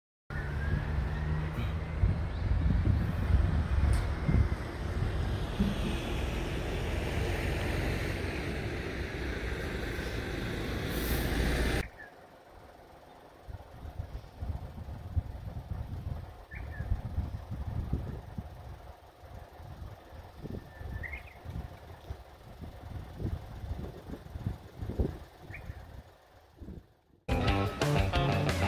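Road traffic noise, loud for about twelve seconds with a vehicle passing close by, then a sudden cut to much quieter outdoor sound with wind rumbling on the microphone and three short high chirps. Music starts just before the end.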